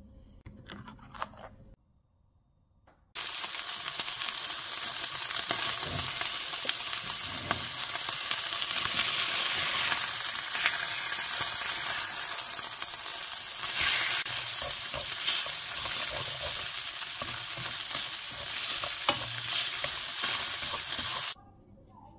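Salmon pieces and skin frying in a nonstick pan, sizzling loudly and steadily, with wooden chopsticks clicking and scraping against the pan as they turn the pieces. The sizzle starts suddenly about three seconds in and stops abruptly near the end.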